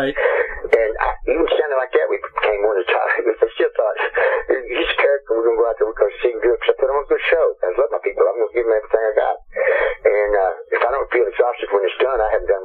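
Speech only: one person talking without a break, the voice thin and narrow as over a telephone line.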